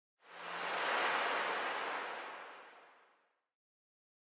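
A whoosh sound effect: a rush of noise that swells up over the first second, then fades away to silence by about three and a half seconds in.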